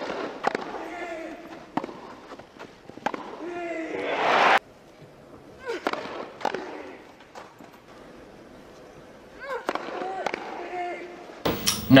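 TV broadcast sound of a professional tennis match on grass: sharp cracks of racket on ball a second or two apart, with voices and crowd noise. The crowd noise swells about four seconds in and cuts off abruptly.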